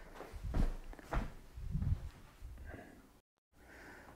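A few soft, low thumps, as of footsteps or handling in a small room, then a moment of dead silence at an edit cut near the end.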